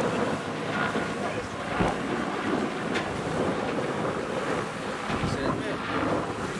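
Wind buffeting the microphone on the open deck of a river tour boat under way, over the steady rush of the boat and its wash on the water.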